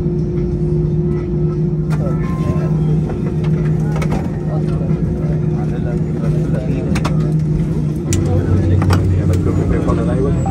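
Airbus A320 cabin during taxi: the engines hum steadily under a low rumble, and a deeper hum joins about eight seconds in. Passengers talk in the background, and a few sharp clicks stand out.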